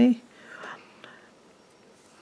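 A spoken word trails off, then a soft breathy whisper, then faint room tone.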